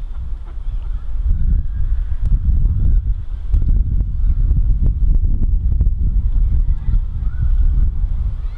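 Wind buffeting the microphone, a loud low rumble throughout, with faint calls of waterfowl on the lake over it.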